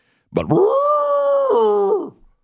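A man imitating a desert beast's call with his voice: one long 'roor' that swoops up, holds, and drops to a lower pitch near the end.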